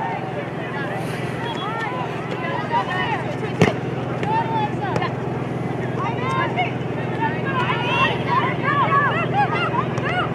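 Scattered short shouts and calls from players and sideline voices across an outdoor soccer field, over a steady low hum, with one sharp thump about three and a half seconds in.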